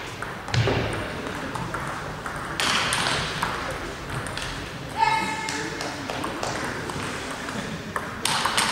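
Celluloid-type table tennis balls clicking on tables and bats around a busy sports hall, irregular single pocks, with a rally under way on the near table at the end. A brief high-pitched squeak about five seconds in is the loudest moment, over a steady murmur of voices.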